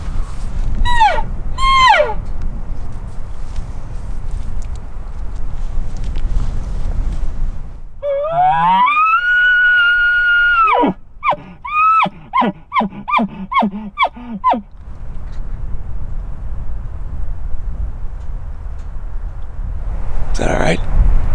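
Hunter blowing a tube elk bugle call, bugling to get a bull elk to answer. Two short falling squeals come near the start. About eight seconds in, a rising whistle is held for about three seconds and then drops off sharply, followed by a string of about eight quick chuckles.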